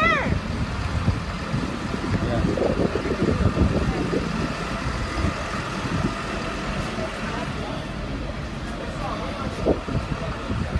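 A fire engine's diesel engine running at idle, a steady low rumble, under indistinct voices of people around it, with a short raised voice at the very start.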